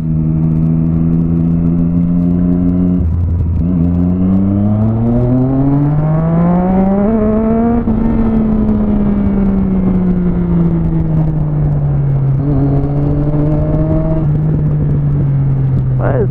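Motorcycle engine heard from the rider's seat while riding: it holds a steady note, changes pitch briefly at about three seconds as a gear changes, then climbs steadily for about four seconds as the bike accelerates. It then falls back slowly as the throttle eases and settles to a steady cruise.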